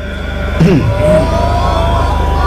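Several voices from the audience calling out briefly, starting about half a second in, in the typical exclamations of approval after a verse of Quran recitation. A steady low hum runs underneath.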